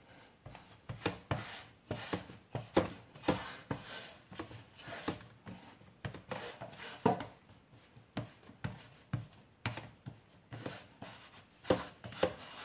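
Hands pressing and patting crumbly dough into a metal baking pan: a run of soft, irregular pats and scrapes, a few a second.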